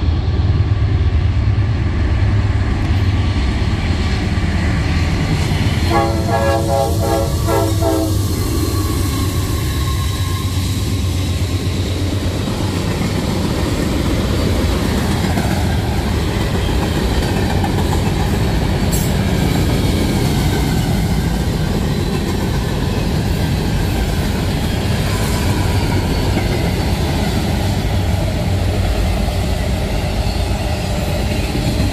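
Freight train passing close by: a steady loud run of tank cars and autorack cars over the rails, with wheel clatter. A train horn sounds once for about two seconds, about six seconds in.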